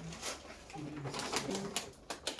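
Brown paper shopping bag rustling and crinkling as it is handed across a shop counter, with faint low voices in the background.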